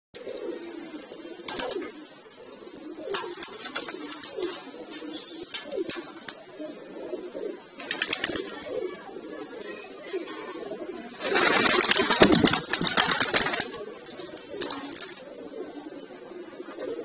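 Domestic pigeons cooing: low, wavering calls repeated throughout, with scattered sharp clicks. A little past the middle comes the loudest sound, a burst of rustling noise lasting about two seconds.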